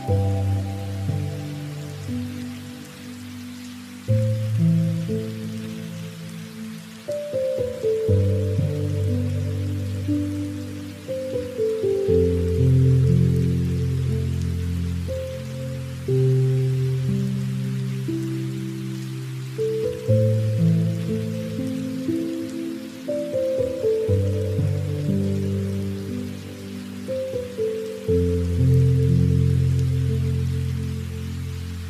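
Background music of soft, held low notes, the chord changing about every four seconds and fading between changes, with a steady rain sound under it.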